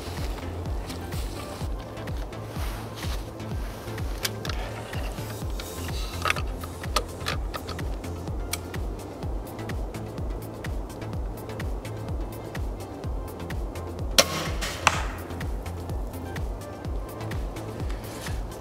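Background music with a steady beat. About 14 seconds in comes a sharp crack from a recurve crossbow's limbs and stock as it is shot, followed under a second later by a second, weaker crack.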